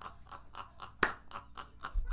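A man's breathy, mostly voiceless laughter: a quick run of short puffs of breath, about four or five a second, with one sharp click about a second in.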